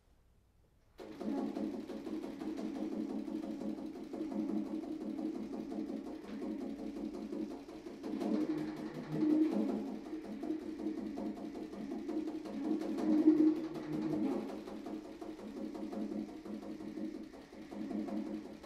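Solo baritone saxophone entering suddenly about a second in with rapid, machine-like repeated low notes, a fast stream of sharp attacks that swells louder twice.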